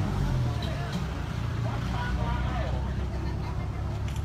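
An engine running steadily at idle, a low even hum, with people talking indistinctly in the background.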